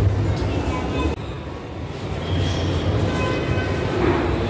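Busy shopping-mall ambience: indistinct crowd chatter over a steady low rumble. The sound drops a little just over a second in.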